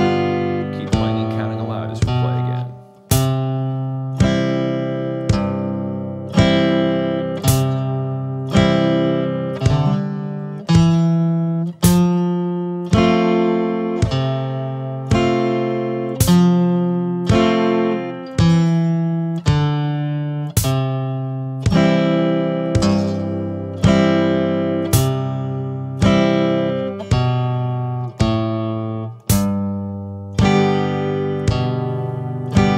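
Strat-style electric guitar picked at a slow steady tempo, single bass notes and chords struck about once a second and left to ring.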